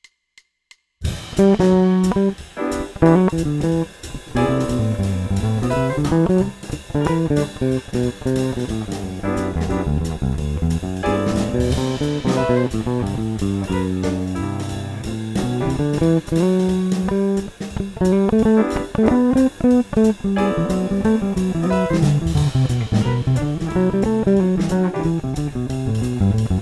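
Electric bass guitar playing an improvised Lydian-mode line on C (C, D, E, F#, G, A, B) over a C major-seventh chord. The raised fourth, F#, gives the line a slightly tense sound. The bass comes in about a second in, after a few short clicks, over a backing groove with drums.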